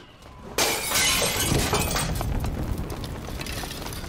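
Molotov cocktail smashing through a house window: glass shatters suddenly about half a second in, followed by a noisy rush with scattered small clicks that slowly fades.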